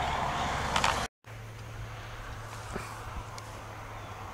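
Steady outdoor background noise on a camera microphone with a low steady hum; about a second in it cuts out abruptly for a moment at an edit, then carries on quieter.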